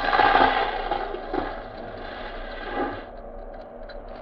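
Radio-drama sound effect of a burning cabin's roof falling in: a loud rush of crackling noise that fades away over about three seconds.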